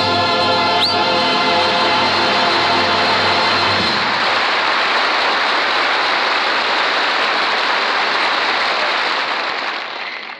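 Studio audience applauding, with a band and chorus holding a final chord that ends about four seconds in. There is a short rising whistle about a second in, and the applause dies down near the end.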